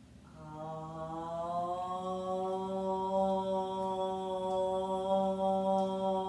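A woman chanting one long, steady 'Om', the closing chant of a yoga practice. It starts a little lower and steps up in pitch after about a second and a half, then is held.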